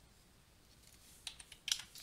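A quick cluster of faint computer keyboard keystrokes: four or five short clicks bunched together in the second half, the loudest near the end.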